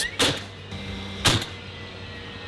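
DeWalt cordless framing nailer driving nails through a 2x2 strip into a plywood wall: two sharp shots about a second apart, each with a short ring after it.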